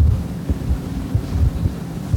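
Low rumble with irregular soft thumps, typical of air buffeting the microphone.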